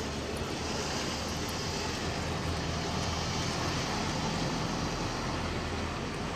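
Outdoor city ambience dominated by a steady low rumble of traffic or a nearby vehicle engine, swelling slightly in the middle and easing near the end.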